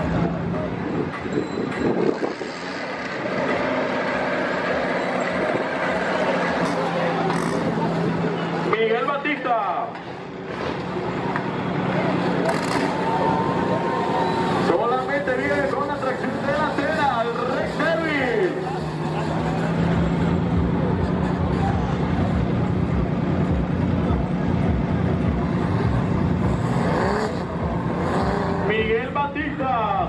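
Engine of a stripped Jeep-style 4x4 off-road competition vehicle working hard on a mud course, held at high revs with a brief easing about ten seconds in, then running hard and steady through the second half. Voices come over it a few times.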